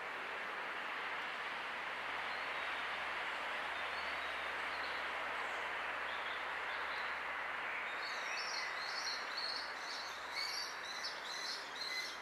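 Steady rushing outdoor background noise, joined about two-thirds of the way through by a quick run of high, repeated bird chirps.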